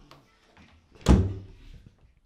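A door banging shut once, about a second in, with a short ring-out in a small room.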